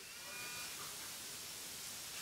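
Quiet pause between spoken phrases: faint, steady room hiss.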